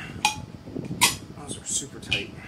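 Metal parts clinking as test-fit bolts are pulled back out of an aluminium bed plate. There are two sharp clicks with a short ring, about a quarter second and a second in, among softer scrapes.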